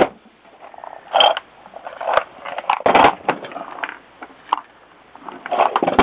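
Rummaging through a plastic parts bin: irregular clatters, scrapes and clicks of small metal reloading-press parts being moved about, the loudest clatter about three seconds in.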